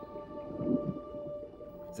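Background music: a few sustained tones held steady over a faint low wash.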